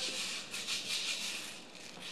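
A karaoke machine plays a soft, shaker-like rattle as it tallies the song's score. The rattle fades away gradually.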